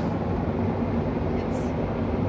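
Car cabin noise while driving: a steady low drone of engine and tyres on the road, heard from inside the car.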